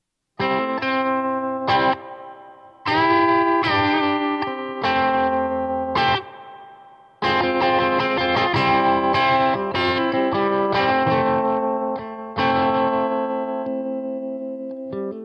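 Electric guitar chords played through the 8-inch Jensen P8R8 speaker in a converted Fender Frontman 10G cabinet. Chords are struck and left to ring, with short breaks in the first seven seconds, then the playing runs on without a break.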